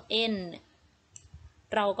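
A woman's voice says a single letter, then in a pause a faint click sounds about a second in, typical of a computer mouse click advancing a slide animation, before she speaks again.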